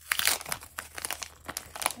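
Small plastic toy-packaging bags crinkling as they are handled and torn open, in a dense run of irregular crackles that is loudest in the first half-second.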